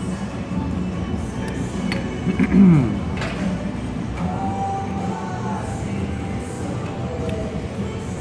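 Background music over steady room hum, with faint held notes in the middle and one short sliding tone, the loudest moment, about two and a half seconds in.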